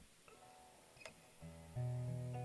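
Acoustic guitar being brought into playing position: a few soft plucked notes and a sharp click about a second in, then the first chord strummed near the end, ringing on loudly.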